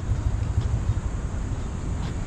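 Steady low outdoor rumble with no distinct event.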